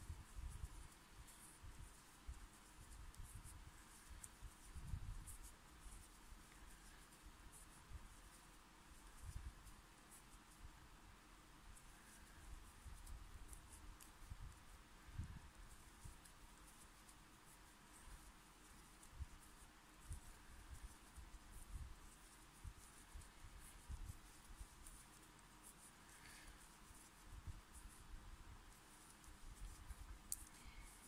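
Near silence with faint handling noise of single crochet stitches being worked with a metal crochet hook and yarn: soft scratching, small ticks and scattered low bumps of the hands.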